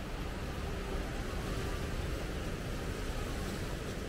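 Steady rushing noise of sea surf and wind, with a low rumble of wind on the microphone.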